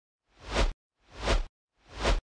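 Two swelling whoosh sound effects, each building up and then cutting off suddenly, with dead silence between them, and a third starting to swell near the end.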